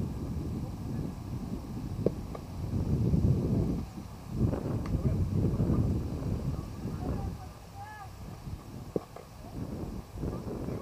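Wind noise on the microphone, swelling and easing in gusts, with faint distant voices calling across the field and two sharp clicks, one about two seconds in and one near the end.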